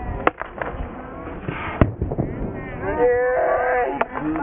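Field hockey ball struck twice with sharp cracks, about a second and a half apart, amid voices on the pitch; a long call comes near the end.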